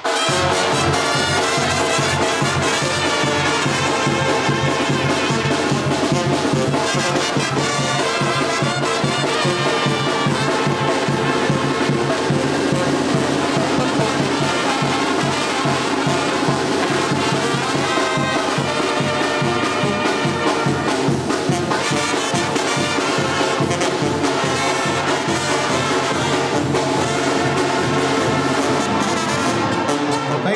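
Live Mexican brass band playing an instrumental tune, with trumpets, trombones and sousaphone over drums. It kicks in abruptly at the very start and plays at a steady, loud level.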